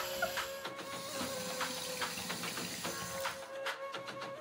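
Background music with a steady, light beat over a held tone.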